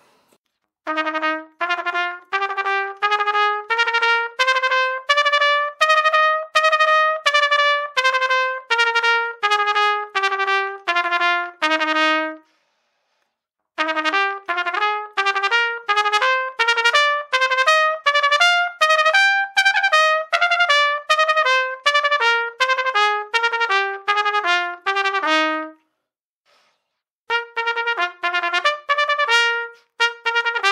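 Trumpet playing a double-tonguing exercise: fast runs of repeated tongued notes that climb a scale and come back down. There are three phrases, each with a short break between.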